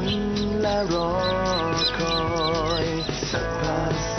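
A slow pop song: a singer holds long notes with vibrato over steady instrumental backing.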